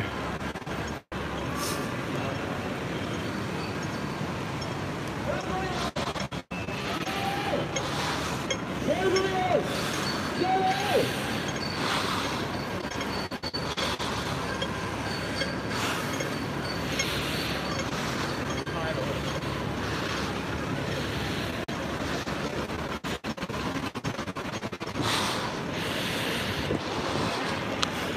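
Steady street noise with scattered distant voices, a few calls or shouts rising and falling in pitch a few seconds in. The sound cuts out for an instant a few times.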